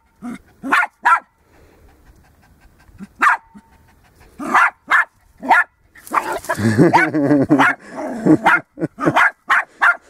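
Small terrier-type dog barking in short, sharp bursts at a lizard that is gaping at it. The barks come in a few spaced bouts, fall quiet for about two seconds early on, and become a denser flurry in the second half.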